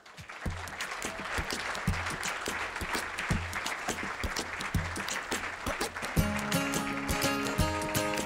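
Audience applauding over music with a steady bass beat. A melody with held chords comes in about six seconds in.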